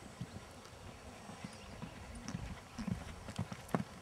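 Hoofbeats of a horse cantering on sand arena footing: irregular dull thuds, with one sharper, louder knock near the end.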